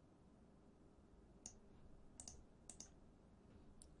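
Near silence with a few faint computer clicks, single clicks and close pairs, from about halfway through.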